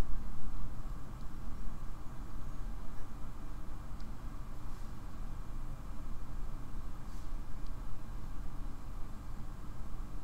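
Steady low background rumble, with a few faint clicks about four and seven seconds in.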